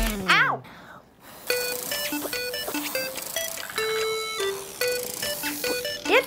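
Homemade rubber-chicken toy, a rubber glove stretched over a plastic cup and blown through a drinking straw, giving a string of short honking squawks at a few different pitches, about three a second. A brief falling whistle-like glide comes right at the start.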